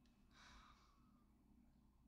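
Near silence, with one faint sigh from a woman about half a second in.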